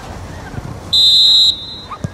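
Referee's whistle: one short, shrill blast of about half a second, signalling play to restart after a stoppage.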